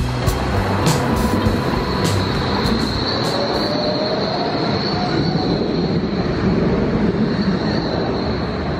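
A yellow Berlin street tram running past on its rails, a steady rumble of wheels on track with a high, steady squeal from the wheels on the rails that starts about three seconds in. Jazz background music fades out during the first couple of seconds.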